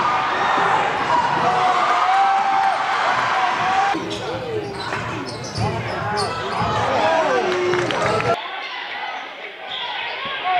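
Live basketball game sound in a gym: a ball dribbling on the hardwood, short high squeaks and the crowd's voices. The sound cuts abruptly about four and eight seconds in.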